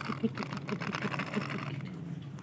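A rhythmic mechanical clatter, about seven even beats a second, that stops near the end, with light clicks and rustles of dolls and paper being handled.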